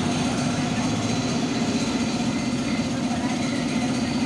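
An engine idling steadily, a low even drone with a fast flutter.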